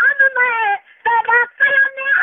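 A solo voice singing a naat, a devotional song, in long high-pitched sung lines broken by two short pauses, about a second and a second and a half in.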